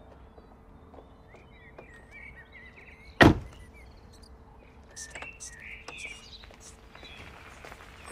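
A car door shut once, firmly, about three seconds in. Around it are a few faint ticks like footsteps and faint chirps like birdsong.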